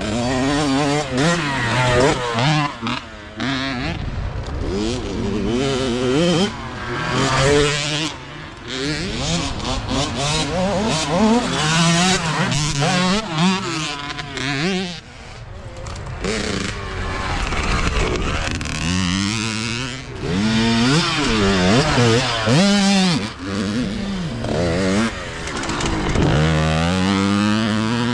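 Youth dirt bike engines revving hard, the pitch climbing and dropping over and over as the riders accelerate, shift and back off along the trail.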